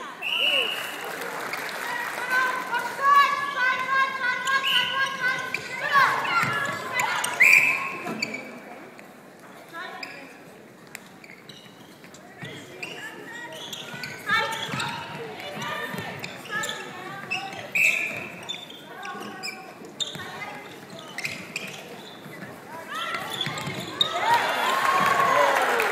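Netball play on an indoor wooden court: players' short shouted calls and a ball bouncing and striking hands, echoing in a large hall.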